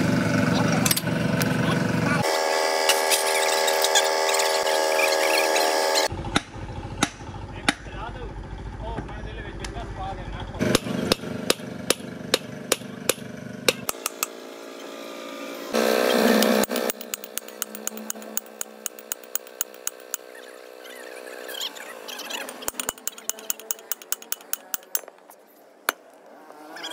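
Hand work on a truck differential: sharp metal clicks and taps of spanners, bolts and steel parts as the pinion housing is unbolted and pulled from the carrier, coming in quick runs through the middle and later part, over workshop voices and a steady hum.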